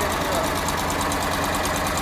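The LuAZ off-roader's air-cooled V4 engine runs steadily at low revs while the vehicle creeps in reverse in low-range gear.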